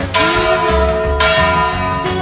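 Church bell ringing: two strikes about a second apart, each leaving a long ringing tone of several steady pitches. Underneath is music with a steady bass beat.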